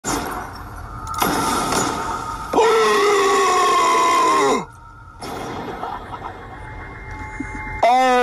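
A man's shocked scream, one long loud cry held for about two seconds that drops in pitch and breaks off, after shorter vocal outbursts.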